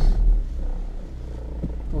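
Car engine idling, a low steady rumble heard inside the cabin, swelling briefly at the start.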